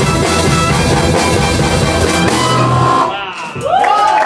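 A live horn octet of saxophones, trumpet, electric guitar, double bass, drums and piano plays its closing bars. A held note ends the piece about three seconds in, and the audience breaks into cheering and whistling near the end.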